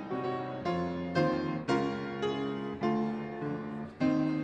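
Piano playing in chords, with a new chord struck about every half second, each ringing on until the next.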